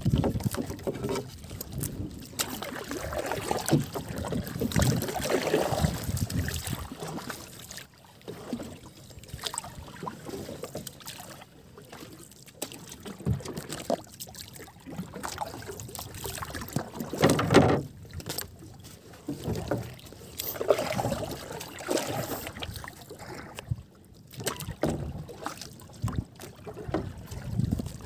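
Sea water lapping and slapping against the hull and outrigger of a small outrigger boat drifting at sea. It comes in irregular, uneven surges.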